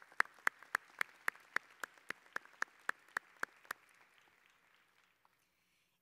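Audience applause in a large arena: one set of claps stands out, loud and evenly spaced at about four a second, over thinner clapping from the rest. It dies away about four seconds in.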